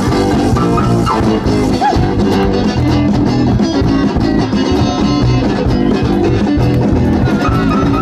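Rock band playing an instrumental stretch of the song, guitar over a steady drum kit beat, with no vocals.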